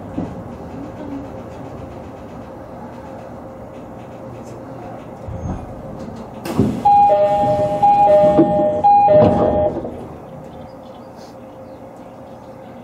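JR 209-series electric train running, heard from inside the front car. About six and a half seconds in comes a sharp knock, then for about three seconds the loudest sound: a two-note signal, a higher and a lower tone alternating three times over.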